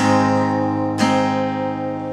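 Acoustic guitar, tuned a half step down, strumming an A chord shape twice: once at the start and again about a second in, the chord ringing out between the strokes.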